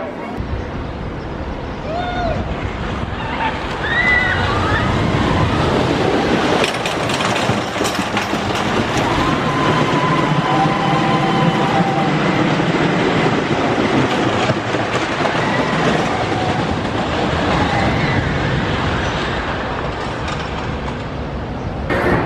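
Philadelphia Toboggan Coasters wooden roller coaster train rumbling along its track, with riders' voices and shouts over it; the rumble swells about four seconds in and holds.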